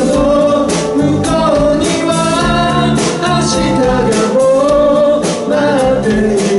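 Live pop band playing a song: a male voice sings the melody over keyboard, electric and acoustic guitars, bass guitar and a drum kit keeping a steady beat.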